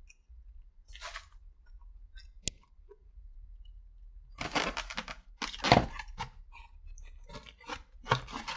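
Close-up eating sounds: chewing a piece of sauced chicken and licking sticky fingers. There is a sharp click about two and a half seconds in, and a loud stretch of rustling and handling noise from about four and a half to six and a half seconds, followed by a few small clicks.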